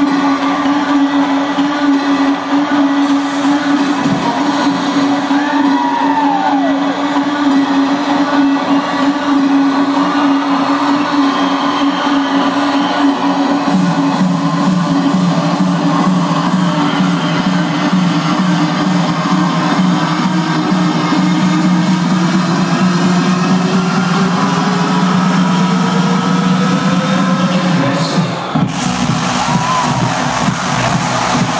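Loud electronic dance music from a festival sound system, with held low synth notes. A rising sweep builds over several seconds and breaks off suddenly near the end.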